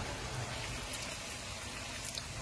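Hot oil sizzling steadily around a buñuelo, a thin round of wheat dough, frying in a shallow pan.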